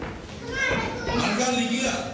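Speech: a man talking into a stage microphone.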